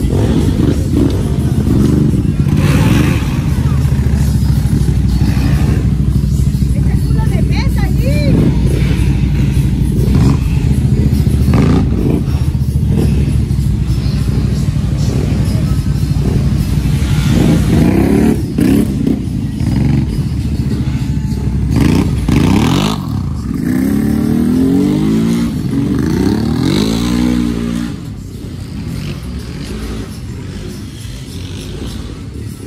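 Off-road vehicle engine running with a steady drone, then revving up and down repeatedly from a little past halfway until near the end.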